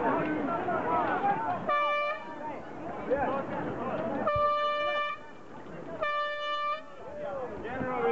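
Three blasts of a race committee's horn sounding a general recall at a sailing race start. The first is short, about two seconds in, and the other two are longer, each lasting under a second. Men talk underneath.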